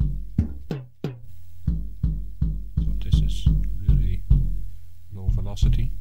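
Kick drum sample from a jazz kit triggered repeatedly from a MIDI keyboard, about three hits a second. Its pitch rises with velocity: hard hits sound pitched up and soft hits sound low.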